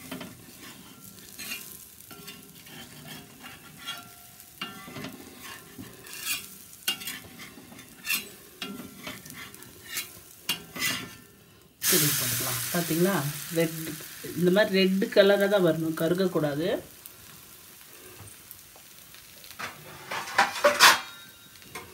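Dosa batter frying in oil on a cast-iron tawa: soft sizzling with scattered crackles and light spatula touches against the pan. About twelve seconds in, the sizzle turns suddenly much louder for several seconds, then drops back.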